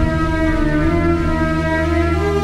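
Dramatic background music: loud, sustained held tones from the score, with no rhythm.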